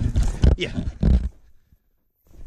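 Footsteps through snow and wind rumbling on the microphone under a short spoken 'yeah'. About a second and a half in, the sound cuts out to silence.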